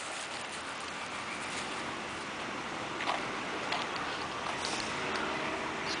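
Steady outdoor background noise with a few faint footsteps on pavement as the camera carrier walks.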